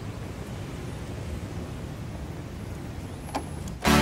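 A steady, low rumbling noise with a faint click a little after three seconds; loud band music with brass cuts in right at the end.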